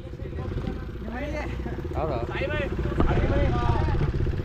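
Small two-wheeler engine idling steadily, with short bits of talk over it.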